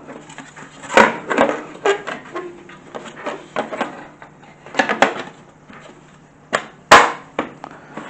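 PC case panels being handled and fitted together, making a series of knocks and clicks, the loudest about seven seconds in.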